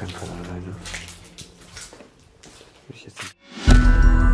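Faint scuffs and rustles in an empty room, then a moment of silence and loud ambient background music with held, ringing tones starting near the end.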